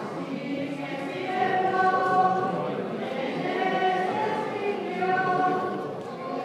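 A group of voices singing a hymn together, holding long sustained notes.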